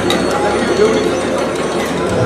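Live percussion ensemble playing: rapid, rattling drum strokes over held and gliding keyboard tones.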